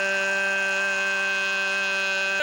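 A football commentator's long drawn-out goal shout, one loud note held at a steady pitch.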